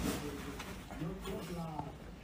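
Shar-pei dog grumbling into a handheld microphone held at its muzzle: two low, wavering vocal sounds, close-miked.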